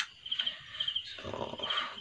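A cricket chirping steadily, short high pulsed chirps about two a second, with a short click at the start.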